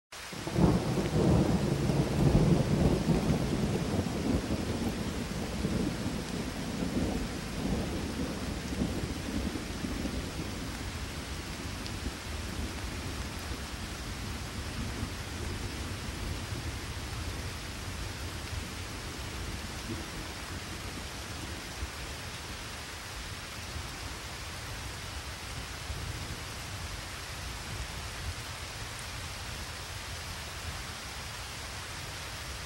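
A long roll of thunder over steady rain: the rumble starts right away, is loudest in the first few seconds and dies away over about ten seconds, leaving the rain falling on its own.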